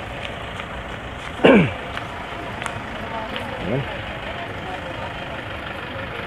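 Steady street traffic noise beside a road. About a second and a half in, a loud short voice-like call falls steeply in pitch, and a fainter falling call follows near four seconds in.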